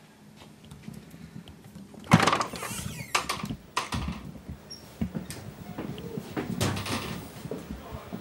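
A heavy double door to a corridor pushed open with a loud clunk about two seconds in, followed by several further knocks and thuds.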